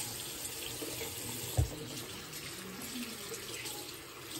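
Bathroom sink tap running steadily into the basin, with a single dull thump about a second and a half in.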